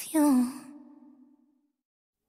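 A female singer's last sung note, sliding down in pitch and fading out over about a second as the song ends, then silence.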